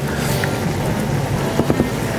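Mushroom sauce simmering in a skillet with a steady sizzle while a wooden spoon stirs it, under background music.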